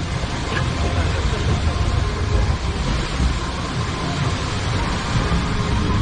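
Water coaster boat running along its track with a steady low rumble and a haze of rushing noise.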